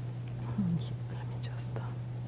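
A pause in a lecture: a steady low electrical hum, with faint breathing near the microphone and a few small clicks.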